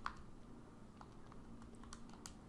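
Keys of a TI-89 Titanium graphing calculator being pressed: a few faint, short clicks, one at the start, one about a second in and one near the end.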